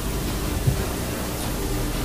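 Steady hiss of an old, noisy lecture-hall recording, with a faint steady hum underneath.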